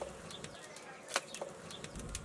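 A few short, sharp clicks and taps at irregular intervals, one louder than the rest a little past the middle.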